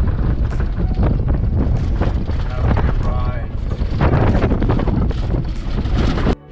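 Cabin noise of a 4x4 driving over a rough sandy dirt track: a steady engine and tyre rumble with wind buffeting the microphone and frequent knocks and rattles.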